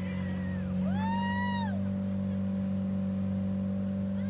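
Motorboat engine running at a steady speed while towing, with a high, drawn-out shout about a second in.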